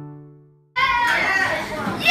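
The last chord of a song rings out and fades to silence. After a sudden cut, a classroom of children talks and calls out over one another.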